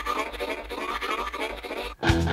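Background music: the tail end of a track, a scratchy, repeating texture over a steady low hum, which cuts off just before the end.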